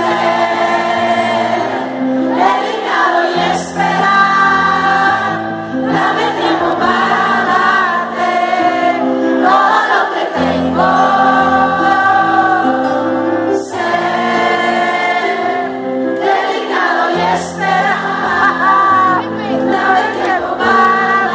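Live pop song: a woman singing over electric keyboard chords, recorded from the audience of a concert hall.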